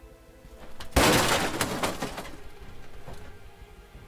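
A suspense film's jump-scare sound effect: a short swell, then a sudden loud crashing hit about a second in that dies away over a second or so, over a low music drone.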